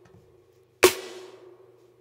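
A single snare drum hit about a second in, its tail fading out over about a second, played through a spring reverb emulation plugin set to reverb only.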